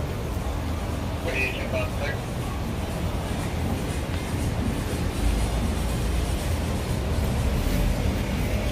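City street noise: a steady low rumble of traffic, growing louder about five seconds in, with faint voices.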